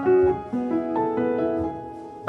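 Piano music with slow, sustained notes and chords.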